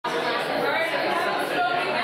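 Chatter of many people talking at once in overlapping one-on-one conversations, a steady din with no single voice standing out.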